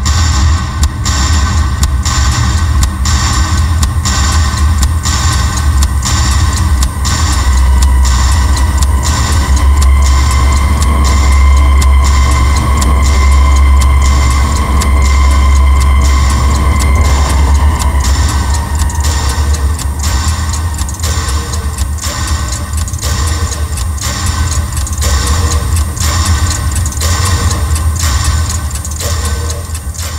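Suspense film score: a loud, heavy low drone with a high sustained tone swelling in the middle. Over it, a pendulum wall clock ticks at a steady, even pace, and everything fades near the end.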